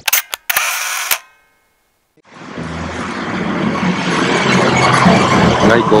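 A couple of sharp clicks and a short burst of noise, then about a second of silence. Outdoor noise with a low, steady motor hum then fades in and grows louder.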